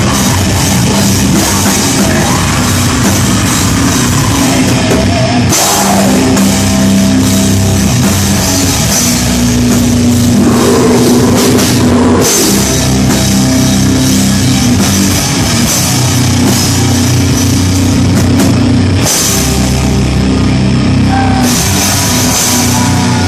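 Heavy metal band playing live and loud: distorted electric guitar, bass guitar and a drum kit with constant cymbals, plus a singer's vocals. The riff changes a few times.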